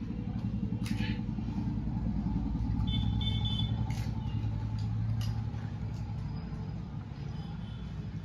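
A low, continuous engine rumble, like a motor vehicle running close by, growing louder toward the middle and easing off near the end. A brief high-pitched squeal comes about three seconds in.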